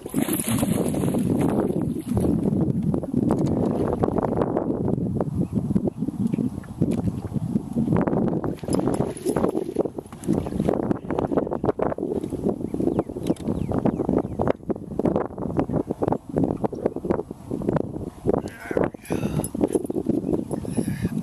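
Wind rumbling on the microphone, with irregular knocks and rustles of handling throughout.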